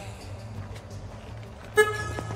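A single short electronic beep from the car's alarm or warning system, near the end, over steady background music.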